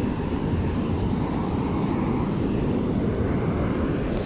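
Wind buffeting the phone's microphone: a steady low rumble with a rapid, uneven flutter.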